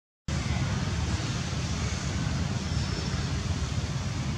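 Steady outdoor background noise with a low rumble, starting after a brief dropout to silence.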